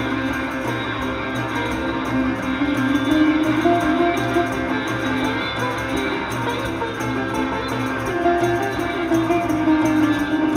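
A live band playing an instrumental raga-rock passage: electric guitar and sitar over a steady drone, with drums keeping time.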